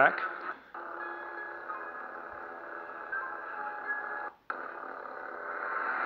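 Music tracks playing through a ProffieOS lightsaber's small built-in speaker while the saber's Edit Mode switches between tracks. The sound cuts out briefly about half a second in and again a little past the middle, each time coming back as a different track, and the last one grows louder near the end.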